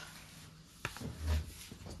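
Handling noise on the recording phone as it is moved to be plugged in for charging: a sharp click about a second in, then a short low thump and faint rustling.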